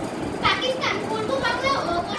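Schoolgirls' voices talking in a classroom.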